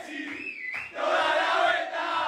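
A group of men chanting and singing together loudly in a celebration chant, the phrases breaking off briefly just before the middle, over a regular low beat of about three a second.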